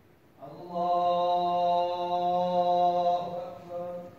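A man's voice calling out in a long, drawn-out chant during a Muslim funeral prayer, the prayer leader's call to the standing rows. One long held call of about three seconds is followed by a shorter phrase near the end.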